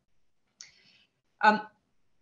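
A pause in a woman's narration: a faint breath a little after half a second in, then a short spoken 'um'.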